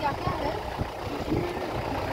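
Safari vehicle driving slowly along a forest track, its engine running with a steady low rumble.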